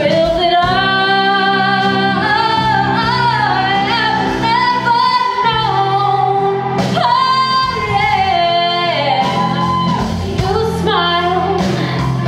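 Live band playing a slow ballad: a woman sings long, sliding held notes over sustained electric guitar chords and drums.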